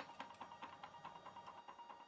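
Small stepper motor driven step by step by an H-bridge board, giving faint, evenly spaced ticks about seven a second over a faint steady whine.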